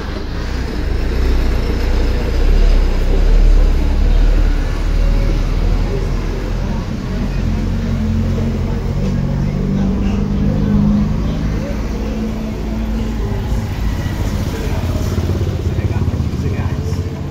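Street traffic passing close: a Volkswagen Constellation box truck's diesel engine rumbling by, loudest a few seconds in, followed by cars and motorcycles driving past.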